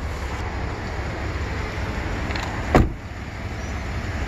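A Ford F-150 pickup's door shut with one loud thud about three-quarters of the way through, over a steady low rumble.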